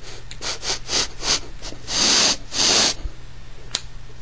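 A person sniffing the air to pick up a smell: a quick run of about six short sniffs, then two long, deep sniffs.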